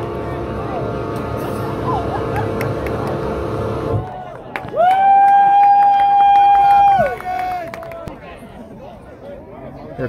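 A single loud horn blast of about two seconds, one steady note that sags in pitch as it ends, sounding about five seconds in. Before it, crowd noise with a steady hum cuts off suddenly at about four seconds.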